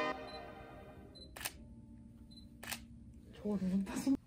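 Two camera shutter clicks about a second and a quarter apart, after piano music fades out at the start.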